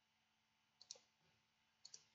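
Near silence with a few faint computer mouse clicks, in two quick pairs about a second apart.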